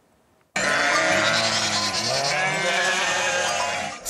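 A flock of sheep bleating, many voices overlapping, starting suddenly about half a second in after a brief silence.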